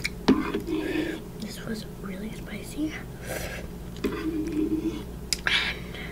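Close-miked eating of instant noodles: chewing and slurping mouth sounds with a sharp click near the start and short noisy bursts a few seconds in and near the end, mixed with soft voice sounds.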